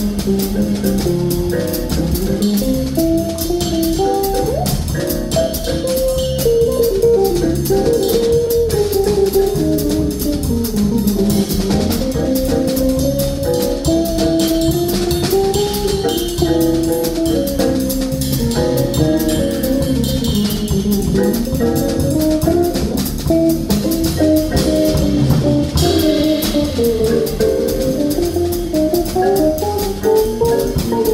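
Live jazz combo playing: a drum kit keeps time with steady cymbal work under a single melodic line that wanders up and down in pitch, most likely a guitar solo, with keyboard accompaniment.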